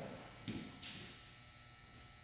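Brief rustling from a person moving and turning on a foam training mat in a heavy cotton martial-arts uniform: two short swishes about half a second and a second in, over faint steady tones.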